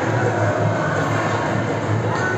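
Background music with a steady, pulsing bass beat.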